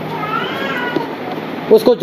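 A single short, high-pitched cry that rises and then falls in pitch, lasting under a second.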